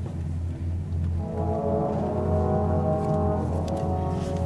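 Orchestral music from an oratorio: a deep, sustained low note, with held higher chords entering about a second in.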